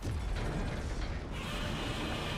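Movie sound effects from a giant-monster fight: dense crunching and creaking over a steady low rumble. A harsher, rasping layer comes in about halfway through.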